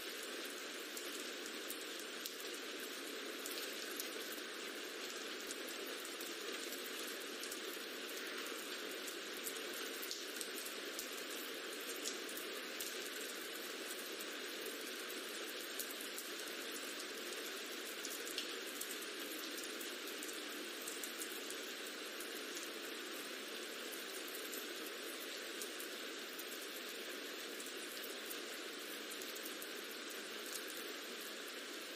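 Recorded rain ambience: a steady, even patter of rain with nothing below a low cutoff, and a few faint ticks of single drops.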